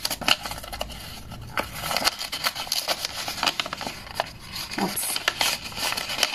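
A tightly sealed paper envelope being pulled open by hand: dry rustling and crinkling of paper with many quick small clicks, busiest from about two seconds in.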